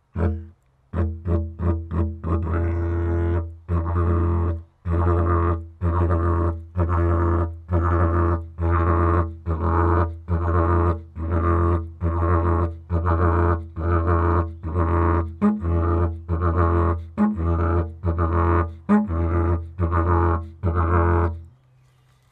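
Yidaki (traditional didgeridoo) played in the old-school 'hacked' style: a deep, harsh drone cut into separate notes with little pauses between them, not linked together. A quick run of short stabs comes first, then roughly one note a second until it stops shortly before the end.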